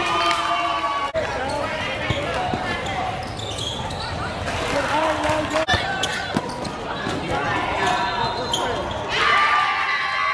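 A basketball bouncing on a hardwood gym floor during play, with spectators and players shouting over it in a reverberant hall. The voices get louder about nine seconds in.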